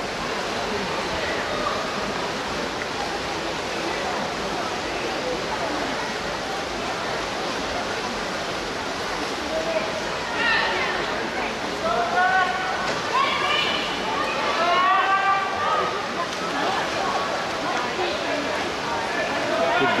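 Steady, rushing din of an indoor swimming pool during a race: swimmers splashing along the lanes under a general crowd hubbub. Raised spectator voices join in from about halfway through.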